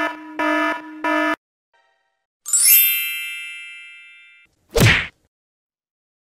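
Electronic alarm beeping: a fast series of identical buzzy beeps, about three in the first second and a bit, then stopping. About 2.5 s in comes a single bright metallic ding that rings and fades over about two seconds, followed by a short thump near the end.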